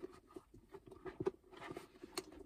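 Hands squeezing and working a Portland Leather mini crossbody bag, its stiff leather being softened: faint, irregular small creaks, rustles and ticks of handled leather.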